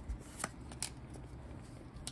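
Pokémon trading cards being handled and slid against one another in the hands, with a couple of sharp card flicks about half a second in and just before one second.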